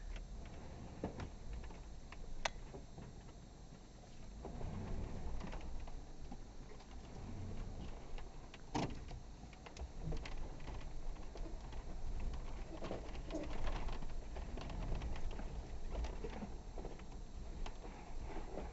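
Off-road vehicle's engine running with a low, uneven rumble on a rough trail, with a few sharp knocks about 2.5 and 9 seconds in.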